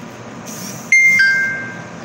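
Phone notification chime: two electronic notes, a high one stepping down to a lower one that holds and fades, coming in suddenly about a second in after a short rustle.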